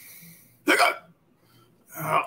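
A short intake of breath, then one clipped spoken word, "Look", read aloud.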